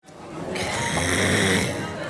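A man's breathy, throaty exhale lasting about a second, beginning about half a second in, over background noise that fades in.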